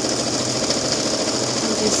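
A Janome computerized sewing machine running steadily at speed, its needle stitching through the fabric in a fast, even rhythm.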